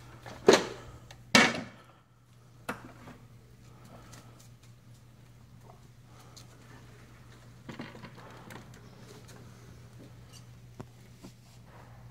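Two loud clunks about a second apart as a plastic bucket loaded with lead ingots is handled and set down on brick pavers, the ingots knocking together inside, then a quieter stretch with a faint steady low hum and a few light knocks as the next bucket is settled on the scale.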